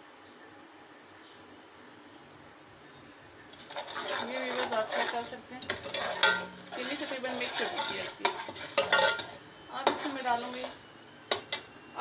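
A long metal slotted spoon stirring and scraping around an aluminium pot of sugar and water, starting about three and a half seconds in, with squeaks of metal on metal; the sugar is being stirred to dissolve it into syrup. Two sharp clinks near the end as the spoon is set against the pot.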